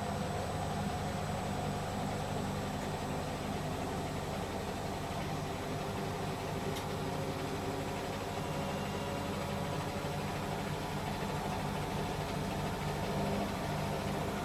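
Several Hotpoint washing machines running together on a spin cycle: a steady motor and drum hum with a few fainter whining tones above it.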